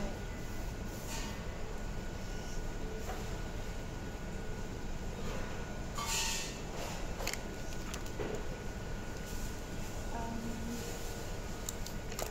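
Paper rustling as pages are handled and turned, in several short bursts, the loudest about six seconds in. Under it runs a steady low rumble with a faint high whine.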